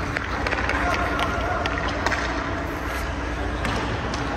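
Indoor ice rink sound: skate blades scraping on the ice and scattered sharp clicks of sticks and puck over a steady low hum, with faint distant voices.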